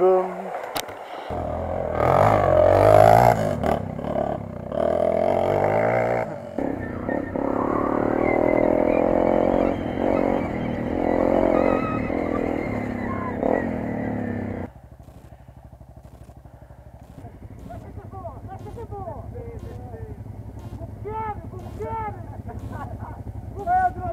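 Off-road motorcycle engines running and revving on a trail, with voices mixed in. About fifteen seconds in, the sound cuts off suddenly to a much quieter stretch.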